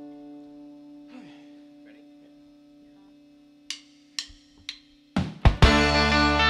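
A held electric guitar chord rings and slowly fades. About three and a half seconds in, four sharp clicks count in, and a few heavy drum hits bring the band in with electric guitar and drums near the end.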